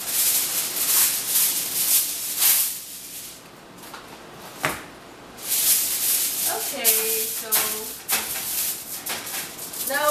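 Aluminium foil crinkling and rustling in bursts as it is laid over a baking sheet, with a short lull and a single sharp click about halfway through.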